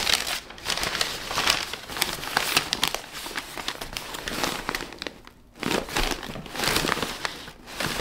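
White packing paper being pulled from a cardboard box and handled, a busy crinkling rustle with a brief pause a little past halfway.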